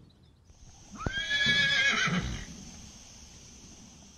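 A horse whinnying once, about a second in: a high call that rises sharply, holds for about a second and wavers as it dies away.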